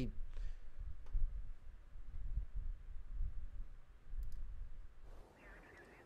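A few soft clicks, as of a computer mouse: one about a second in and a quick pair around four seconds, as a video is started. They sit over a low, uneven rumble of room noise. Faint audio from the video begins near the end.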